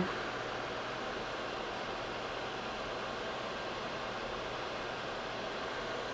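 Tschudin HTG 310 cylindrical grinder running with a steady, even hiss and a faint low hum, with no distinct strokes or changes.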